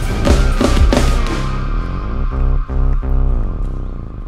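Live band music: drums, bass, guitars, keyboards and a brass section playing a march. The drum hits stop about a second in and the band holds long chords, broken twice by short cuts near the middle.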